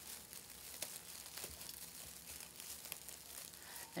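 Faint crinkling and rustling of metallic plastic deco mesh and a tinsel tie being worked by hand, with a couple of light ticks.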